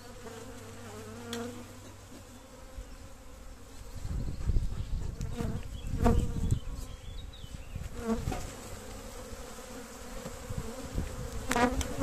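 Honeybees buzzing in numbers around a newly opened nuc box, a colony that is flying up after being disturbed. A low rumble on the microphone joins in from about four seconds in and fades by about seven seconds.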